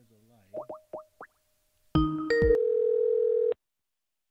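Telephone-line tones on a dial-in conference call. A few quick rising chirps come first. About two seconds in, a loud stepped chord of electronic beeps follows, then a steady tone that holds for about a second and cuts off abruptly.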